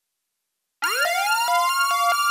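Police car siren sound effect winding up, rising steeply in pitch and levelling off into a held wail, with a quick even ticking under it. It starts suddenly about a second in, out of silence.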